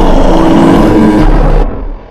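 Harsh noise music: a loud, dense wall of distorted noise with a few steady pitches and a deep rumble underneath. It cuts off near the end, leaving a short fading tail.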